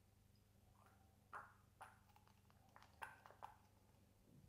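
Plastic syringe dispensing perfume into a small glass decant bottle and then being drawn out: a handful of faint, short squirts and clicks, about a second and a half in and again around three seconds in, over a low steady hum.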